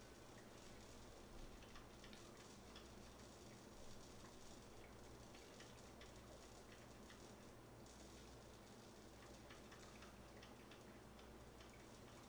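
Near silence: room tone with a faint low steady hum, and two slight soft sounds in the first few seconds.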